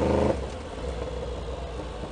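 Yamaha R1 sport bike's inline-four engine running under light throttle. About a third of a second in, its note falls away abruptly as the throttle is closed, leaving a lower steady engine rumble with road and wind noise as the bike slows in traffic.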